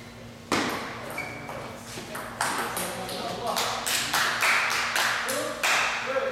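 Table tennis rally: a celluloid ping-pong ball clicking sharply off rubber-faced paddles and the tabletop, a string of quick pings about every half second. Voices are heard alongside.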